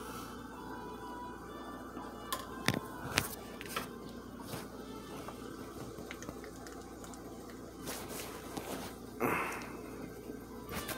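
Quiet background music under a few faint clicks and wet squelches from a torn stress ball being squeezed, its gel filling oozing out. A short, louder burst of noise comes near the end.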